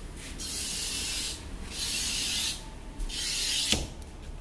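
Hand glass cutter scoring a sheet of glass along a straightedge: three scratchy strokes, each under a second long, then a sharp click near the end.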